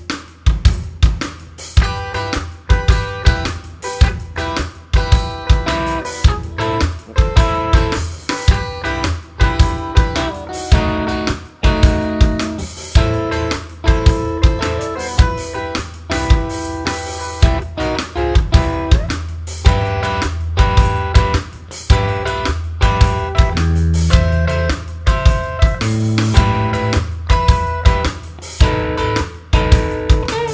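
Electric guitar strumming an E minor blues progression (E minor, A minor, B7 chords moving up the neck) over a steady drum beat with kick and hi-hat.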